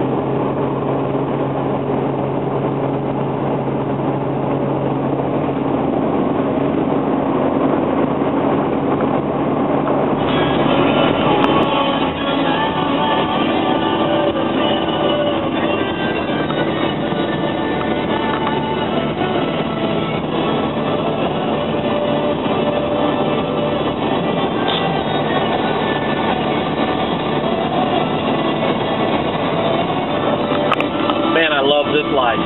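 Steady engine and road drone heard from inside a moving vehicle's cabin. About ten seconds in it changes abruptly to a louder, brighter rush of road and wind noise.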